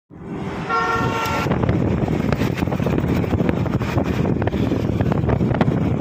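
A vehicle horn sounds once, briefly, about a second in, over the steady low rumble of a moving vehicle with scattered rattles and knocks.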